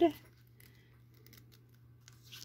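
Near silence: room tone with a faint steady low hum, just after a spoken word ends at the very start.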